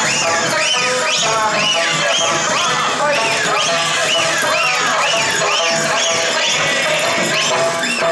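Okinawan eisa folk music with sanshin and singing, loud and steady, amplified through a loudspeaker on a parade cart. A high line rises and falls about twice a second over it.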